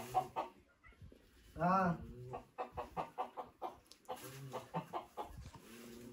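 Hens clucking: runs of quick short clucks, with one drawn-out call that rises and falls about two seconds in.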